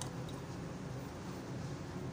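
Freshly squeezed orange juice pouring in a steady stream into a drinking glass that is nearly full.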